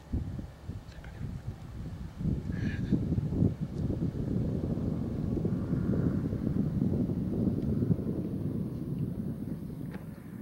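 Wind buffeting the camera microphone: a rough, gusty low rumble that grows stronger about two seconds in and then holds. A brief high chirp sounds near three seconds.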